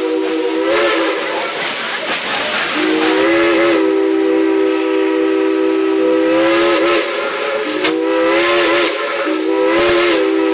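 Klondike Katie steam locomotive's chime whistle blown in a series of blasts of a several-note chord, the pitch bending up as the valve opens and wavering as the whistle is played. A long steady blast sounds in the middle and shorter ones near the end. Steam hisses between the blasts.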